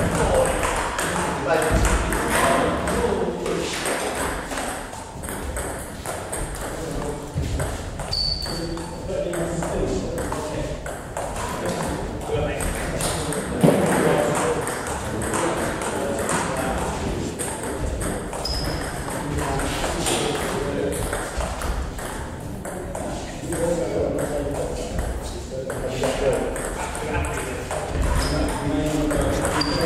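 Indistinct chatter in a large hall, with scattered sharp clicks of a table tennis ball bouncing and a few brief high squeaks.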